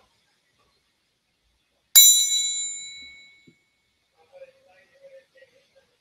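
A hand-held metal triangle struck once, a bright ringing chime that fades away over about a second and a half.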